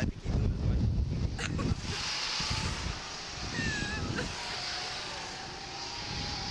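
Wind buffeting the microphone as the slingshot ride's capsule swings through the air: a heavy rumble for the first two seconds, then a steadier rushing hiss.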